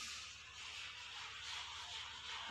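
Chalk writing on a blackboard: a faint, continuous scratchy hiss as letters are written.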